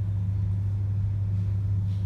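Steady low electrical hum from the microphone's sound system, a mains hum with one main pitch and a weaker one an octave above.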